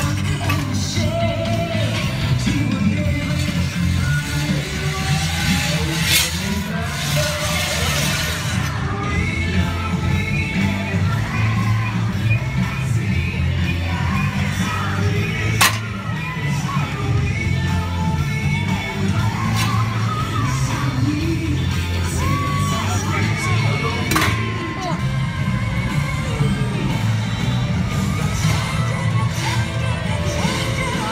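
Parade music playing loudly from the passing floats, with a steady heavy bass and singing, over crowd chatter and cheers; a sharp crack cuts through about halfway.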